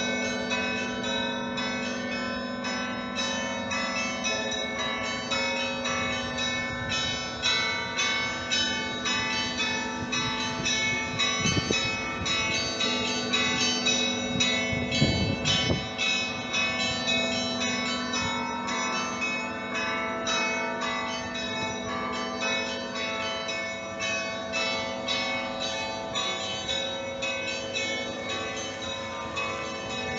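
Russian Orthodox church bells ringing: a quick, continuous run of strikes on the smaller bells over a steady, lower ringing tone from the larger bells.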